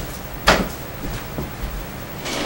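A sharp knock about half a second in, with a few fainter taps and clicks after it: household handling sounds, like a drawer or cupboard being shut.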